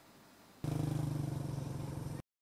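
A small engine running steadily with a low hum. It starts suddenly about half a second in, after a moment of near silence.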